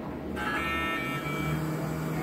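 X-ray machine making an exposure: a steady whine of several high tones cuts in suddenly about a third of a second in and lasts about a second, overlapped by a steady low hum that starts about a second in.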